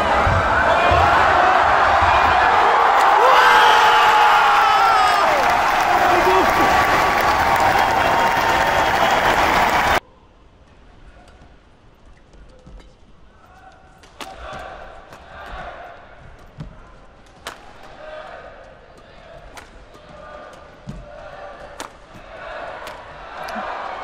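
Badminton match sound: for the first ten seconds, loud crowd noise with voices in a large arena. It then cuts abruptly to a much quieter rally with sharp racket hits on the shuttlecock every second or so.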